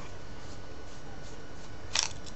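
Small e-cigarette being handled as its battery is fitted into the back end, with a single sharp click just before the end, over a steady background hiss.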